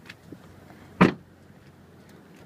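The rear side door of a 2002 Honda CR-V being shut: a single short slam about a second in.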